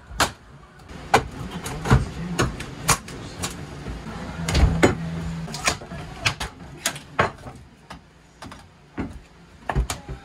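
Hammer and steel pry bar knocking and prying a wooden backsplash strip off the wall edge of a laminate countertop: a string of irregular sharp knocks and cracks, roughly two a second.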